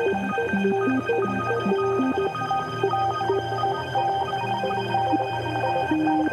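Electronic background music with a sustained low bass and a melody of short notes that change quickly.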